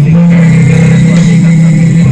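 Loud live band music through a concert PA, with a low chord held steady.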